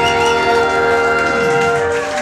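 Live ska band with a horn section holding a long final chord, steady sustained notes, cutting off near the end.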